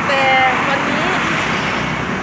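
A woman speaking Thai over steady street traffic noise.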